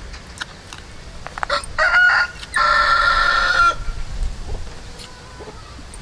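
A rooster crowing once, loud and close. A short opening phrase comes about two seconds in, then after a brief break a long held note that breaks off about a second later.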